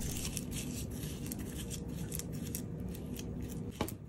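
A wooden spoon mixing softened butter with crushed seaweed and sesame seeds in a glass bowl, giving soft scraping and small clicks against the glass, with a sharper knock just before the end. A faint steady hum lies underneath.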